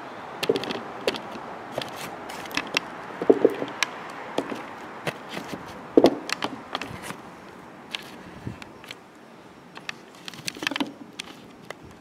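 Handling noise from a camera being positioned and steadied: irregular light clicks, taps and knocks, with a few brief rubbing sounds.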